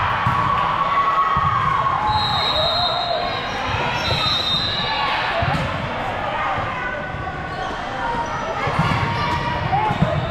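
Echoing hubbub of an indoor volleyball hall: many voices of players and spectators, with thuds of volleyballs being hit and bouncing on the courts. Two brief high-pitched tones sound about two and four seconds in.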